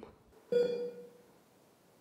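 A single pitched chime-like tone sounds suddenly about half a second in and fades away over about a second, with faint room tone around it.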